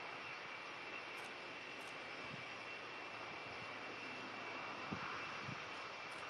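Boeing 747's jet engines running at low taxi power: a steady rushing noise with a thin high whine over it.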